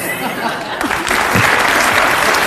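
Studio audience applauding, swelling about a second in.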